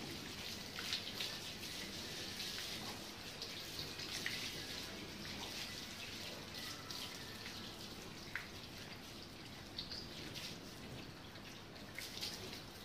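Water from a garden hose running steadily and splashing onto a dog's coat and the wet concrete floor, with scattered small splashes and drips.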